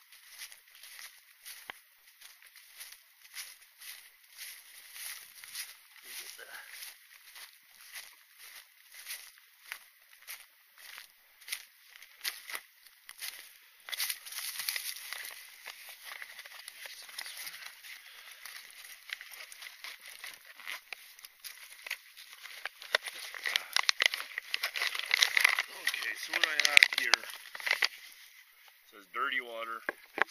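Footsteps crunching through dry grass and dead leaves, about two steps a second. About halfway through they give way to rustling and crinkling as a backpack is rummaged through and a plastic water bag is pulled out.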